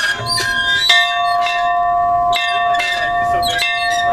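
A small church bell being rung by hand: three clapper strikes about a second and a half apart, each one ringing on into the next.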